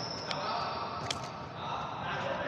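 Footfalls and breathing of a man jogging on an indoor futsal court, with two sharp knocks and a thin high tone near the start.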